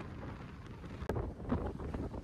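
Wind buffeting the phone's microphone: a low, gusty noise that rises and falls.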